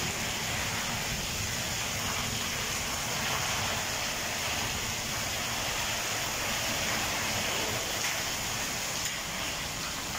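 Rain falling steadily, an even hiss without break, with drops splashing on a hard paved courtyard floor.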